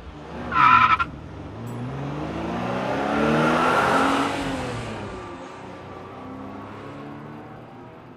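Cartoon-style car sound effect: a short tire screech about half a second in, then an engine sound that swells in loudness with gliding pitch to its loudest near the middle and fades away, like a car driving past.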